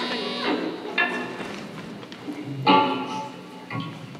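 Electric guitars through amplifiers: a few separate chords struck and left to ring, the loudest just under three seconds in, over voices from the audience.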